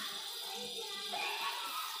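Amla pieces and curry leaves sizzling in hot mustard oil in an iron kadhai: a steady, quiet hiss.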